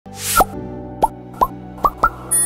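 Logo intro music: a rising whoosh, then four short pops that glide upward in pitch, spaced about half a second apart, over a held chord.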